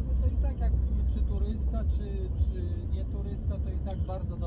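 Steady low rumble of a car heard from inside its cabin, with a quiet voice talking over it.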